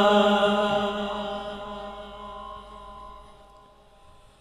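A man's melodic Quran recitation ending on a long held note, its steady pitch fading away gradually over about four seconds through a sound system's heavy echo.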